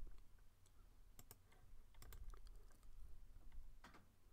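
Faint, scattered clicks of a computer mouse and keyboard, some in quick pairs.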